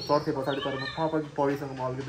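Speech: people talking close by, with no other clear sound.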